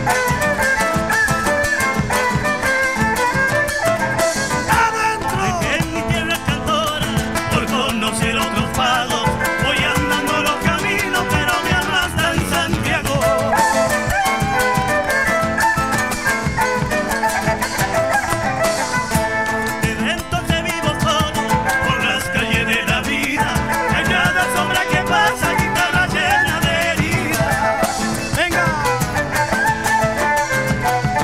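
Live folk group playing a chacarera, an Argentine folk dance tune, continuously and at full volume.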